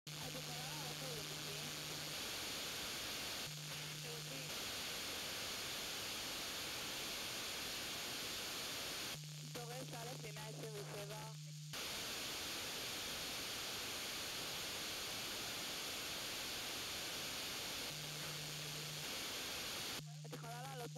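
Narrowband FM radio hiss from a weak, fading IDF low-band transmission on 34.175 MHz received by trans-equatorial propagation. A steady low hum of its 151.4 Hz CTCSS tone comes and goes, along with a faint woman's voice. The voice is clearest about nine to twelve seconds in, when the hiss drops away.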